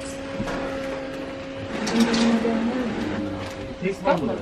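Indistinct voices of people talking in the background, louder about halfway through, over a steady hum.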